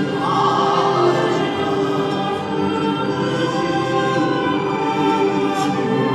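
Choir singing slow, held chords over a string quartet. The sound stays at an even level throughout.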